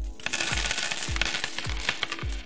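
Coins clinking and jingling as a sound effect, over low thuds that repeat about two or three times a second like a slow beat.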